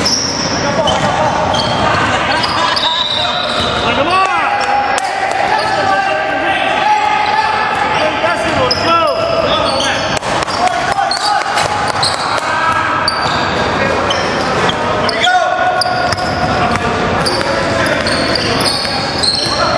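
Basketball game in a gym: the ball bouncing on the hardwood floor and many short, high sneaker squeaks as players run and stop, with indistinct voices of players and onlookers echoing in the large hall.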